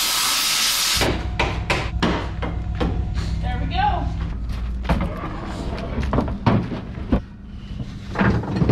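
A loud hiss from a hand tool cutting holes in a steel car hood, cutting off sharply about a second in. Then a run of short knocks and clatters of metal on metal.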